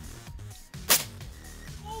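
A single shot from a .45-caliber AirForce Texan big bore air rifle: one sharp, loud crack about a second in.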